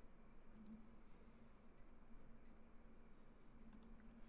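Near silence: faint room tone with a few faint short clicks, one about half a second in and another near the end.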